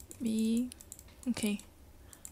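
Two short hesitation sounds from a voice with no words in them, the first longer, about a quarter second and a second and a third in, with faint clicking of computer input around them.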